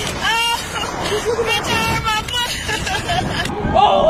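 Riders screaming and laughing on a slingshot (reverse-bungee) ride, over a rushing of wind on the microphone, with a high gliding shriek near the start. About three and a half seconds in the sound changes abruptly to another scream.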